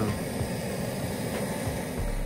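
Handheld gas torch burning with a steady rushing hiss as its flame heats a rusted suspension control arm bolt to loosen it.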